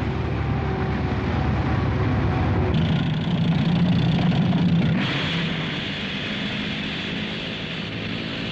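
Sound effect of a heavy tracked vehicle driving: a steady engine drone with track noise. It grows louder about three seconds in and turns brighter and hissier from about five seconds.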